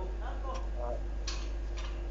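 A faint voice softly reciting, most likely a student reading Arabic syllables from an Iqra primer, with a few sharp clicks at irregular moments over a steady low hum.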